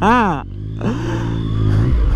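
Yamaha MT-09 inline three-cylinder engine running at low revs as the bike rolls slowly. The note rises slightly and gets louder near the end.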